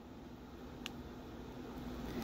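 Quiet room tone: a faint steady hum and hiss, with one small click a little under a second in.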